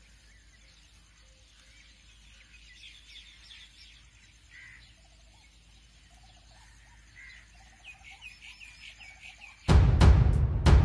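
Faint birdsong: several birds chirping and calling, with a few lower repeated calls in the middle. Loud music comes in just before the end.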